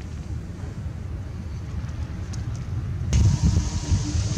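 Wind buffeting the microphone: an unsteady low rumble with faint hiss. About three seconds in it turns louder and hissier.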